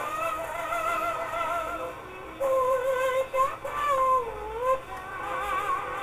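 Singing with a wavering vibrato in long held notes, played from an old shellac 78 rpm record on an acoustic gramophone; the sound is dull, with no treble.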